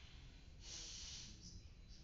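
A person breathing out forcefully through the nose or mouth: a hissing breath about half a second in that lasts about half a second, then a short one and another at the very end, over a low steady room hum.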